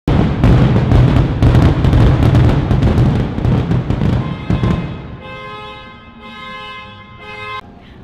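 Fireworks bursting and crackling over loud music. About five seconds in the bursts stop and a held musical chord carries on until near the end.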